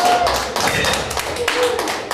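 Small audience clapping, many dense irregular claps, with a brief cheer from a voice near the start.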